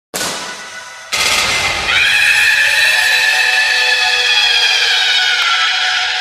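Electronic intro effect opening a DJ mashup track: a sudden crash of noise that dies away, then a second hit about a second in that is held, with high shrill tones sweeping up and then slowly sinking. There is no beat yet.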